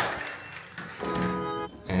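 A sharp click as a key card meets an electronic door lock, then background music with held organ-like chords starting about a second in.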